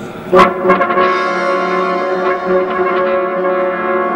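Brass ensemble entering sharply just after the start and holding a loud, steady chord.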